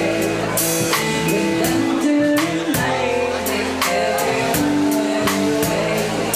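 Live band performing a song: a drum kit keeping a steady beat about twice a second under guitar, with a woman's voice singing over it.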